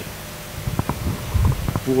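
Microphone handling noise on a handheld microphone: after a short quiet pause, a run of short, low thumps and rumbles as the mic is moved, heaviest about one and a half seconds in.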